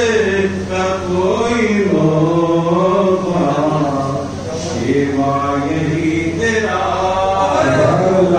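A man chanting in long, slow, drawn-out melodic phrases, the notes held and gliding up and down, over a steady low hum.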